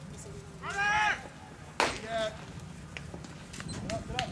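A loud, drawn-out shouted call, then about two seconds in a single sharp crack of a baseball bat hitting a pitched ball, followed by a short voice.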